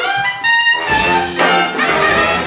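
A live funk big band: the horn section and a tenor saxophone play together, with accented horn hits about every half second to second.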